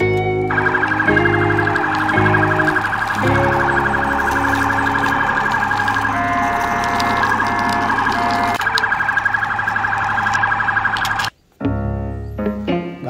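Electronic police-siren sound from a toy police car, warbling rapidly, switching to a stepped beeping pattern about halfway through and back to the warble, then cutting off suddenly near the end. Light music plays underneath.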